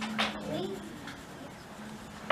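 Orange pastel stick rubbing across paper in colouring strokes, with one louder scratch just after the start.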